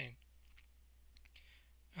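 Near silence: faint room tone with a low steady hum and a few faint clicks a little over a second in.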